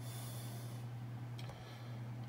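A steady low hum, with a short hiss near the start and a sharp click about one and a half seconds in.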